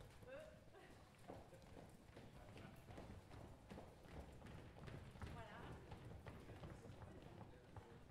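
Faint shuffling footsteps and knocks of chairs as an audience gets to its feet and moves about, with a low murmur of voices.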